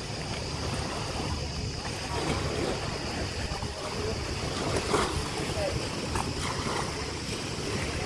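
Seaside ambience: small waves washing on a sandy shore, wind buffeting the microphone, and indistinct voices of people close by, briefly a little louder about five seconds in.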